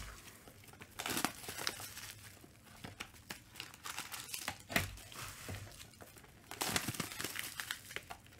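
Clear plastic wrapping crinkling and rustling in irregular bursts as it is pulled and handled out of a trading-card box, with a sharp crack near the middle.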